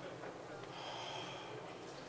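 Faint chamber ambience with distant, indistinct voices, and a brief high steady tone lasting about a second near the middle.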